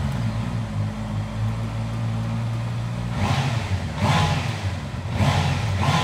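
Honda CB650R's inline-four engine just started and idling steadily through its exhaust, then blipped with the throttle about four times in the second half.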